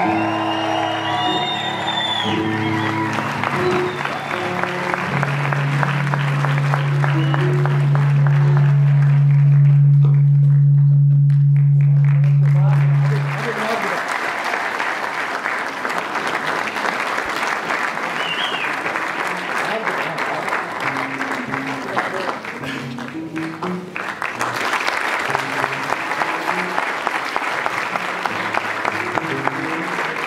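Audience applause, steady and ongoing, over background music with a stepping low line and one low note held for several seconds in the first half.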